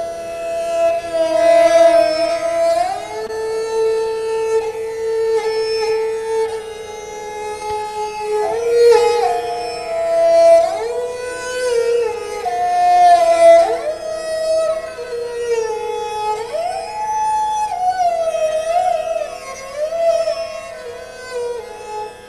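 Sarangi played with a bow: a slow Hindustani-style melody of long held notes joined by sliding glides between pitches.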